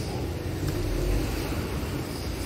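Outdoor street ambience dominated by a steady low rumble, slightly stronger about a second in.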